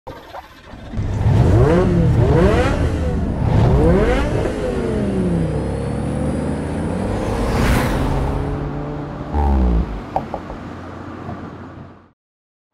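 Intro sound effect of a car engine revving hard up through several gears, its pitch climbing and dropping at each shift. A whoosh follows, then a low hit near the end before it fades out.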